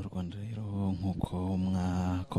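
A deep male voice intoning in long, nearly level notes broken into syllables, chant-like.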